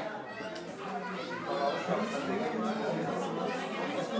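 Several people talking over one another: lively chatter around a table.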